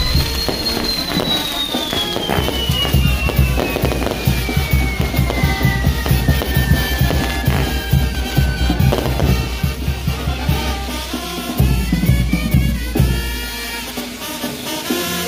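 Fireworks on a castillo pyrotechnic tower crackling and hissing as its frames burn, with a long high whistle sliding down in pitch over the first nine seconds or so. Music with drums plays along.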